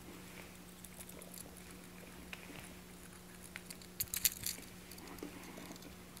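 Quiet rustling, scratching and small clicks of a fishing lure being worked out of its plastic retail package by hand, with a brief flurry of sharper clicks about four seconds in.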